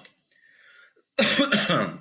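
A man clears his throat once, loudly, starting a little past a second in.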